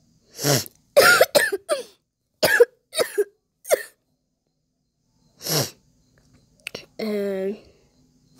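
A boy laughing in a string of short, cough-like bursts, then one more burst after a pause and a brief held voiced sound near the end.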